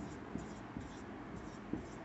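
Marker pen writing on a whiteboard: faint short strokes and light ticks as a number is written out digit by digit.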